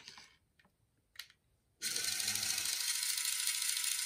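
Retract mechanism of a toy Batman grapnel launcher replica: a single click about a second in, then a steady mechanical whirr with a gear-like rattle from about two seconds in. The launcher is broken and its string is not retracting.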